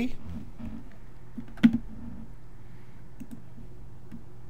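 Computer desk clicks over a steady low hum: one sharp click a little past one and a half seconds in, a softer one right after, and a few faint ones near the end.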